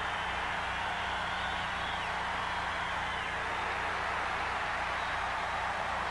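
Steady noise of a large stadium crowd heard through old television broadcast audio, with a low steady hum from the recording underneath.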